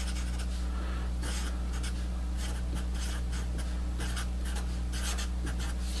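Felt-tip Sharpie marker writing on paper: a run of short strokes as an equation term is written out, over a steady low electrical hum.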